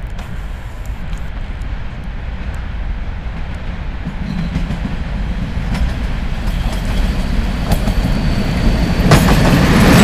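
ET22 electric locomotive hauling a freight train of cement hopper wagons, running toward and past the listener: a low rumble that grows steadily louder as it approaches and is loudest as the locomotive passes near the end.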